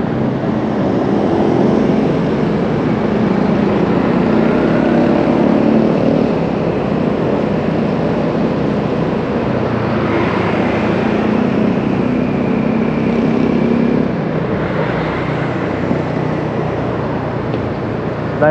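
Motor scooter being ridden through city traffic: its engine note rises and falls as it speeds up and eases off, over steady road and wind noise.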